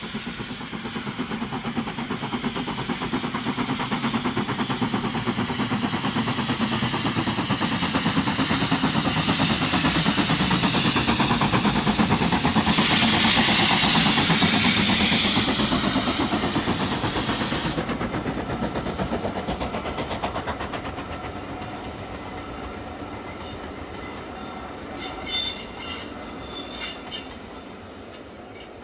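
The Jacobite steam train passing: the locomotive working with the rumble and clickety-clack of its carriages. The sound grows louder to a peak about halfway through, with a loud hiss that stops suddenly, then fades as the coaches roll by.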